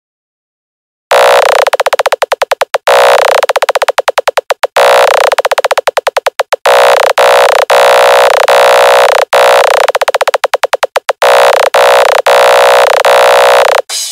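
Electronic dance-music intro: after about a second of silence, a loud, buzzy synthesizer tone is chopped on and off in fast stuttering pulses. The pulses speed up and slow down in repeated runs, then stop just before the beat drops.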